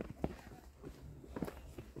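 Footsteps of people walking along a trail: a few faint, irregularly spaced steps.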